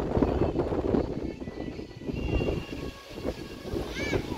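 Gusty wind blowing across the microphone, a low noise whose loudness rises and falls unevenly.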